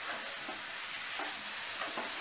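Grated fresh coconut and sugar sizzling in a nonstick pan as a flat spatula stirs and scrapes through it, the sugar melting into the coconut's own milk.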